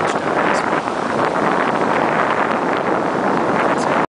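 Steady wind blowing across the microphone, an even rushing noise, mixed with surf washing onto a sandy beach.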